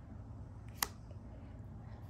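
Magic: The Gathering cards being handled: one short sharp click a little less than a second in, over a low steady hum.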